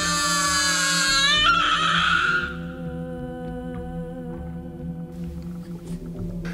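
A baby crying over a low, sustained music drone. The high, wavering cry is loudest for the first two seconds or so, then fades, leaving the music's held notes.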